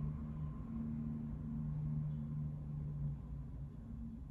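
A low, steady hum over a faint rumble; the hum fades out near the end.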